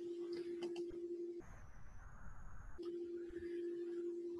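A steady electronic hum at one low pitch, broken off for about a second and a half in the middle while a low rumble of noise takes its place, with a few faint computer mouse clicks.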